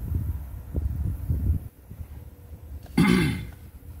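A man clears his throat once, sharply, about three seconds in, the pitch falling. Low rumbling thumps come in the first second and a half before it.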